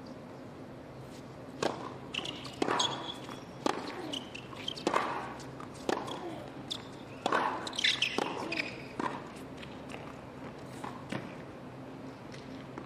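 Tennis rally on a hard court: sharp racket strikes on the ball and ball bounces, about one a second, starting with the serve and stopping about nine seconds in when the point ends.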